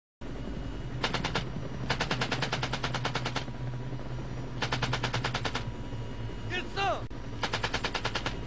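Machine gun firing from inside an aircraft in four bursts of rapid shots, about ten a second, the longest about a second and a half. A steady low engine drone runs underneath, and a short shout falls between the third and fourth bursts.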